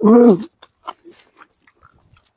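A woman's short vocal exclamation with falling pitch, then faint clicks and smacks of people eating rice and curry by hand.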